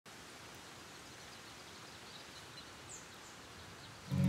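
Faint outdoor ambience: a steady soft hiss with a few quiet bird chirps, the clearest a short falling chirp about three seconds in.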